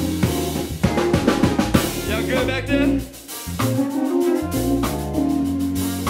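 Live band playing an instrumental passage: drum kit with snare and kick hits over bass, with trumpet. The band thins out for a moment about halfway, then comes back with held notes.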